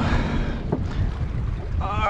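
Wind buffeting the microphone with a heavy, uneven low rumble. A single sharp knock comes about three quarters of a second in, and a voice starts right at the end.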